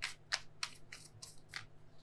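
Tarot cards handled by hand as a card is drawn from the deck: a few short, crisp card snaps and rustles, the last about a second and a half in.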